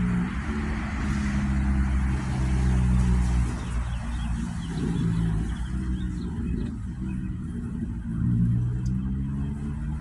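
Freight train passing at a distance: a low diesel engine rumble with rolling noise from the cars, the higher rolling hiss fading about six seconds in.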